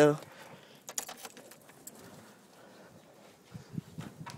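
Quiet stretch with a few faint light clicks and rustles from a handheld phone camera being moved about.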